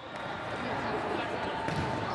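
Indoor gym ambience during a volleyball rally: a steady hall noise with faint voices of players and spectators.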